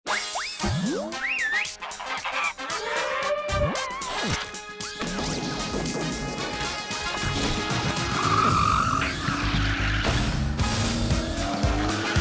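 Title-sequence music with cartoon sound effects: quick pitch-sliding sweeps and crashing hits in the first few seconds. After about five seconds it settles into music with a steady low beat.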